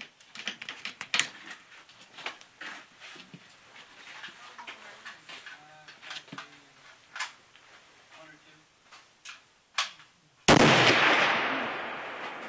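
A .50-calibre rifle fires a single shot about ten and a half seconds in: one sudden loud blast with a long decaying echo. Before it, only faint clicks and knocks.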